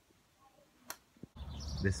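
Near silence in a room, broken by one short sharp click about a second in. Near the end it cuts to outdoor street ambience, and a man's voice begins.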